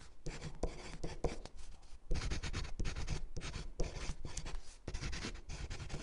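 Pen scratching across paper in quick, irregular strokes, the sound of handwriting, with a short pause about two seconds in.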